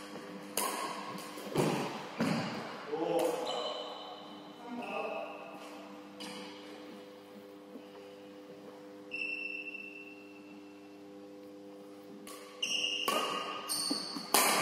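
A doubles badminton rally on a wooden court: several sharp racket-on-shuttlecock hits at irregular spacing, with brief high squeaks of shoes on the floor and a steady low hum underneath.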